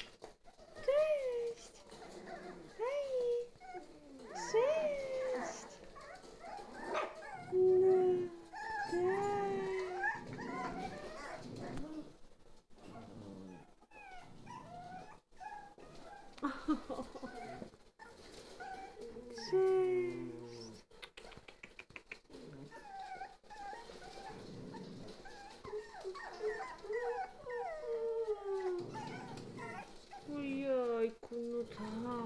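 A litter of Jack Russell Terrier puppies whining and yelping: many short cries that rise and fall in pitch, often overlapping, with a few louder, lower cries among them.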